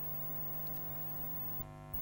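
Faint steady electrical hum made of several constant tones, with a couple of tiny ticks near the end.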